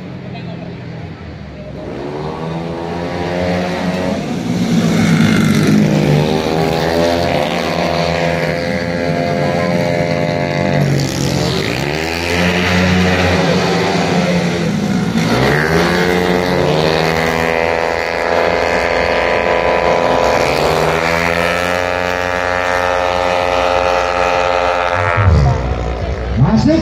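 A pack of stock 130cc automatic scooters racing around a street circuit. Several engines overlap, climbing in pitch again and again as the riders accelerate, then holding high revs, with a falling sweep near the end.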